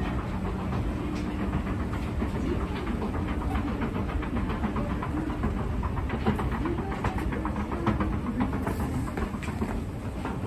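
Escalator running steadily, a constant low hum with a fast rattle of small clicks from the moving steps, as it carries a rider up to the top landing.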